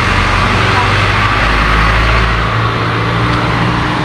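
Motor vehicle engine running, a steady low hum over road-traffic noise; the deepest rumble falls away about two and a half seconds in.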